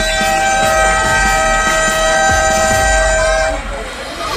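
Basketball scoreboard buzzer sounding one long, steady tone that cuts off about three and a half seconds in, marking the end of the first period with the game clock at zero.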